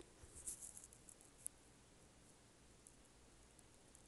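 Near silence, with a few faint clicks and light rustling in the first second and a half as a makeup palette is handled.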